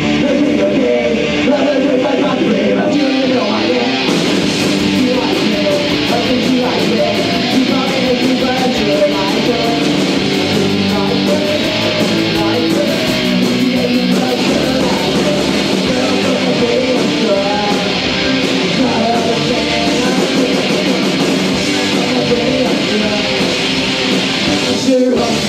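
Live punk rock band playing loud, with electric guitar and drums; the cymbals come in fully about four seconds in and keep going.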